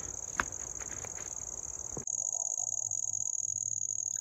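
Insects chirping in a steady, high, fast-pulsing trill. A single click sounds about half a second in. About halfway through, the background changes abruptly and the trill becomes louder.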